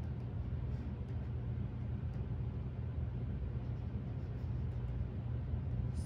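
Steady low hum with a faint hiss of background room noise.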